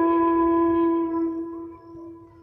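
Background music: a flute holding one long steady note that fades away over the second half.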